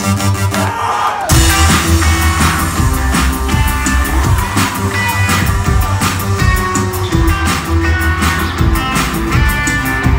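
Rock band playing live through a concert PA: a held chord gives way about a second in to the full band, drums and bass coming in on a steady beat with guitars and keyboard.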